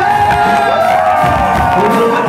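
Live band music from the audience floor: long held and gliding sung notes, with the low bass falling away.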